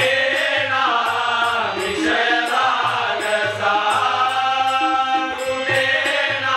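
Marathi devotional bhajan: a group of male voices singing together, led by a solo singer, over a sustained harmonium, with tabla strokes and small jhanj hand cymbals keeping a steady beat.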